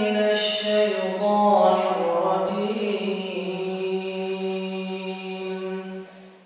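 A solo voice chanting in Arabic in slow, drawn-out phrases whose notes slide and waver, in the style of Quran recitation. The last note is held steady for about three seconds before it breaks off.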